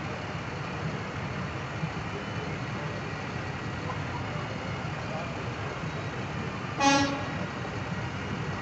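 A single short vehicle horn toot about seven seconds in, over a steady hum of street and crowd noise.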